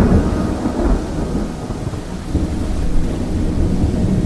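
A sudden low hit followed by a deep, thunder-like rumble with a rain-like hiss, taking the place of the music.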